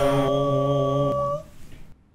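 A voice humming one long steady note, unaccompanied, which stops about one and a half seconds in.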